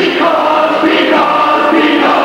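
A group of voices singing together with musical accompaniment, holding long notes.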